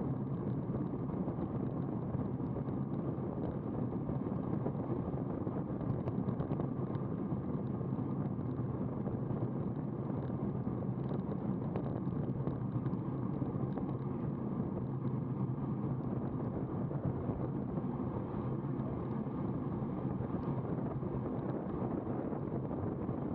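Steady rumble of wind on the microphone and road noise from a road bicycle riding at about 33 km/h.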